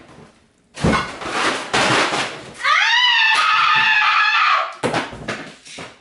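A thud about a second in, then a loud, high-pitched scream that rises and holds for about two seconds, followed by clattering.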